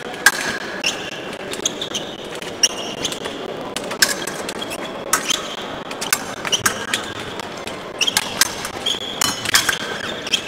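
Fencers' shoes squeaking and tapping on the piste during footwork, with irregular sharp clicks, coming more often near the end.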